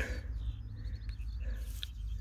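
Quiet outdoor background: a steady low rumble with a few faint high bird chirps and a brief high tick near the end.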